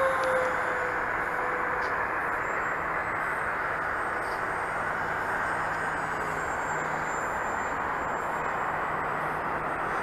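Electric motor and propeller of a TowerHobby CraZe flying wing on a 4S battery, heard in flight at a distance as a faint whine over a steady rushing noise; the whine dips slightly in pitch in the first couple of seconds.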